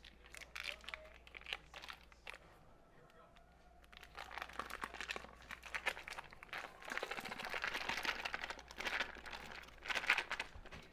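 Foil wrapper of a block of cream cheese crinkling as it is peeled open and handled, in scattered rustles and crackles that grow denser and busier from about four seconds in.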